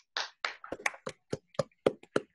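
Hands clapping over a video call: applause that settles into a steady beat of about four claps a second about halfway through, with the gaps between claps cut to silence.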